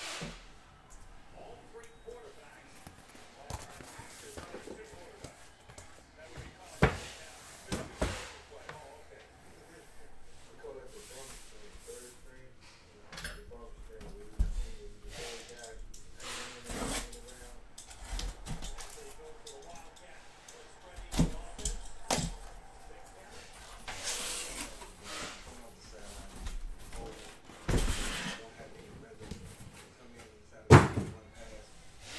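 Cardboard shipping case being cut open and unpacked: a box cutter working through packing tape, then repeated knocks and thumps of cardboard flaps and shrink-wrapped boxes being moved and set down, the loudest about seven seconds in.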